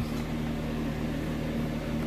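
Steady low electrical hum with a faint hiss from desk radio equipment.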